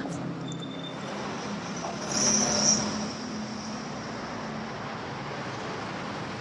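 City street traffic: a steady rumble of passing vehicles, with a louder vehicle going by about two seconds in, carrying a brief high hiss.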